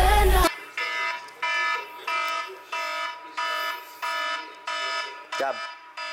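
A music track cuts off half a second in. Then an alarm sounds: a pitched electronic tone repeating about three times every two seconds. A voice speaks briefly near the end.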